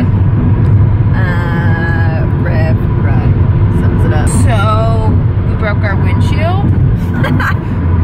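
Car driving, heard from inside the cabin: a steady low road and engine rumble throughout, with women laughing and talking over it.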